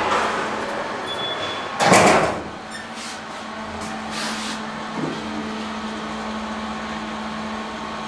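SMW elevator: a short high beep, then the car door closing about two seconds in, the loudest sound. The lift's drive then starts with a steady low hum as the car travels, and there is a small click about five seconds in.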